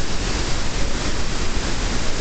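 Steady, loud rush of a huge waterfall, Iguazu Falls, pouring over its brink at close range.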